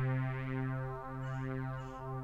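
A sampled Roland Juno-106 synth note at C3, played back from the HALion 6 sampler: one steady held tone, rich and buzzy, with a small dip in level about a second in.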